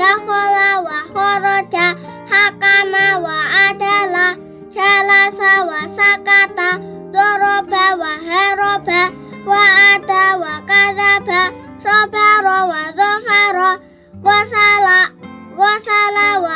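A child chanting Arabic letter-syllables in a sing-song recitation tune, in short phrases with brief pauses, over instrumental background music.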